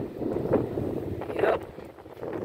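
Wind blowing across the microphone as a steady rumbling buffet, with two short louder moments about half a second and a second and a half in.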